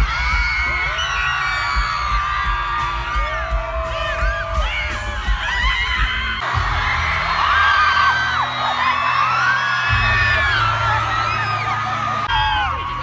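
Live concert music recorded on a phone from inside the crowd: a heavy, dense bass under voices singing and whooping. The sound shifts abruptly about six and a half seconds in.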